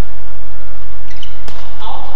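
A sharp smack of a badminton racket striking the shuttlecock about one and a half seconds in, followed near the end by a short squeak of court shoes on the floor, over a steady low hum.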